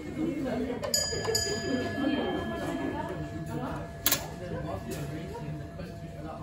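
A signal-box block bell struck twice in quick succession about a second in, its ring fading away over the next few seconds. A single sharp clack just after four seconds is the loudest sound, over a low murmur of voices.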